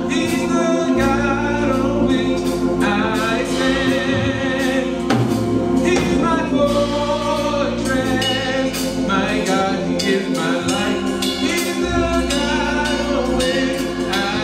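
Gospel singing by a small group of women's voices over sustained keyboard chords, the voices wavering with vibrato and the low chords changing every few seconds.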